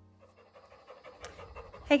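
Faint, rapid panting that grows louder, with a woman's voice starting at the very end.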